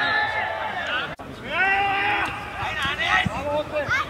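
Several men's voices shouting and calling on a football pitch, overlapping, with a brief break in the sound about a second in.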